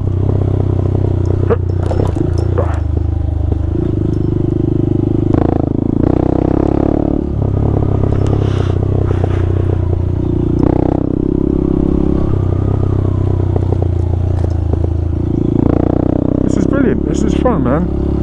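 Honda Grom (MSX125) 125 cc single-cylinder four-stroke engine running under way, its note shifting up and down several times as the throttle and gears change. Occasional knocks and rattles come from the bike riding over a rutted dirt track, heard through a helmet microphone.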